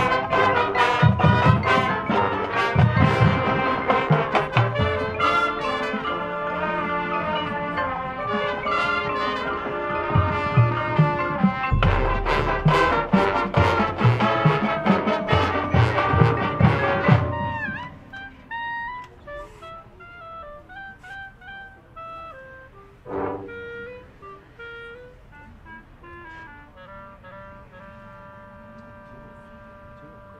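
High school marching band playing: full brass with drumline hits, loud and driving. About 17 seconds in, it drops to a soft passage of held notes with a brief accent.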